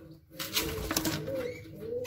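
Zebra finches calling in a cage: short, nasal, arching chirps, with a lower call repeating underneath.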